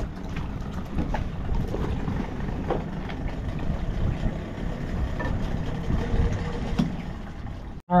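Small outboard motor on an inflatable dinghy running at low speed: a steady low rumble.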